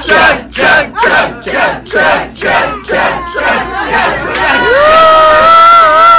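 Audience chanting in rhythm, loud shouts about two and a half a second, as wine is poured into a volunteer's mouth. About four and a half seconds in the chant gives way to one long drawn-out shout.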